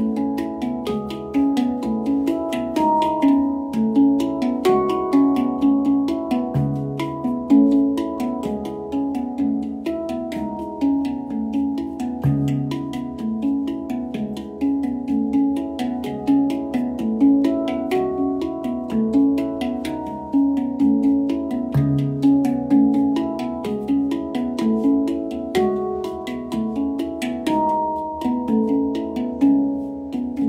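Handpan played by hand: a continuous run of struck, ringing steel notes, several a second, with a deeper low note sounded three times.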